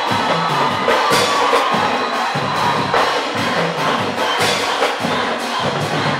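Youth percussion marching band with bell lyres playing, drum strokes falling steadily about every half second, with a crowd cheering underneath.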